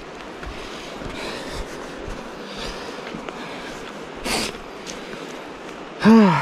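Steady rushing of a river, with light footsteps crunching over dry leaves and grass and one short, sharp sniff about four seconds in.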